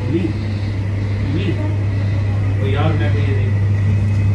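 A steady low hum, with faint voices talking indistinctly in the background.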